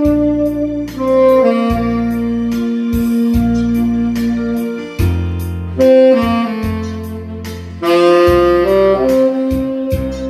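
Tenor saxophone playing a slow ballad melody in long held notes, with a recorded backing track and bass underneath.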